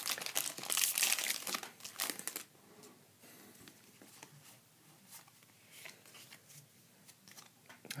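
Foil Pokémon booster-pack wrapper crinkling and tearing open by hand for about the first two and a half seconds, then only faint rustles as the cards inside are handled.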